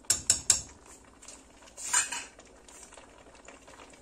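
A long-handled metal spoon knocks three times in quick succession against a large aluminium pot, followed about two seconds in by a short metallic scraping clatter.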